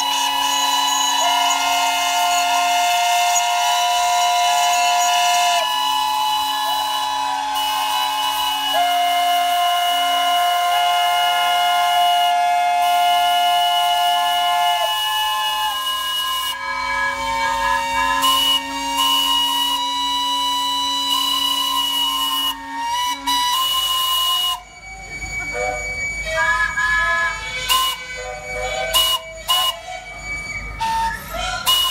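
Many traction-engine and steam-roller steam whistles sounding together as a salute, in long overlapping blasts at many different pitches. About 25 seconds in, the massed sound thins out to shorter, scattered toots.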